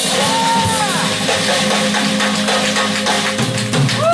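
Live rock band playing loudly, with a drum kit and cymbals and electric guitars, and a high note bending up and back down in the first second.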